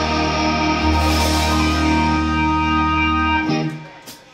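A live rock band with electric guitars, bass and keyboard holds a sustained final chord over a steady low bass note, then stops together about three and a half seconds in, ending the song.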